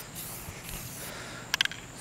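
Aerosol spray-paint can hissing as paint is sprayed, followed by a quick cluster of clicks about a second and a half in.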